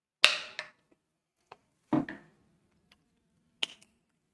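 A few sharp clicks and knocks of small hard objects being handled on a desk. The loudest comes about a quarter-second in and trails off briefly. A duller, heavier knock follows about two seconds in, and one more sharp click comes near the end.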